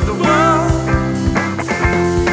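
A live rock band playing a full-band jam: a lead line wavering in pitch over a held bass and regular drum hits.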